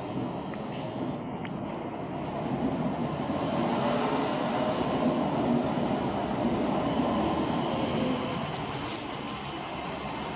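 Osaka Metro New Tram 200 series rubber-tyred automated guideway train pulling in and passing close by. Its running noise builds to a peak about halfway through, then eases.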